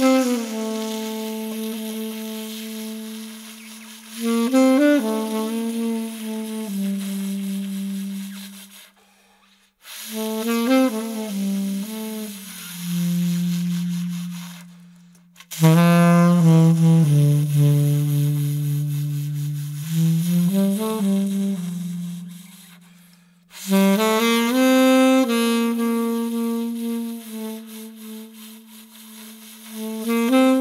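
Solo saxophone playing a slow melody in long held notes, in four phrases separated by short breaks.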